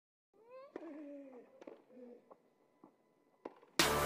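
A short, quiet voiced call that rises and then wavers down in pitch, with a few sharp clicks scattered through it. Near the end, loud music with a beat cuts in suddenly.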